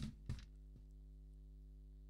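Near silence with a faint steady electrical hum on the broadcast audio line, and a few brief faint clicks in the first half-second.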